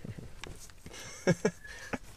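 A few short, soft chuckles, with faint rustle from a handheld camera being moved.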